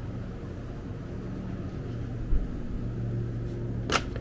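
Steady low mechanical hum of a small supermarket's refrigerated display cases, with a dull low thump about halfway through and a sharp click just before the end.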